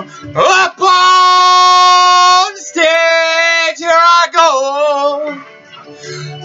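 A man singing unaccompanied without words: a quick upward slide, then one long held note, then a run of shorter wavering notes that fade out near the end.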